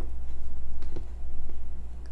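A few soft clicks and knocks as avocado slices are picked off a wooden cutting board and the stoneware bowl is handled, over a steady low hum.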